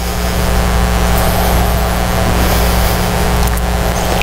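Steady electrical hum with a wash of hiss, with no break or change.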